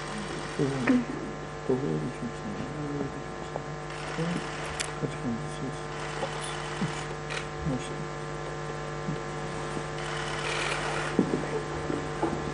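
Steady electrical mains hum, a buzz with many overtones, with faint murmured talk over it.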